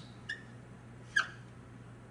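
Dry-erase marker squeaking on a whiteboard as letters are written: a faint short squeak, then a sharper one about a second in that falls in pitch. A steady low hum lies underneath.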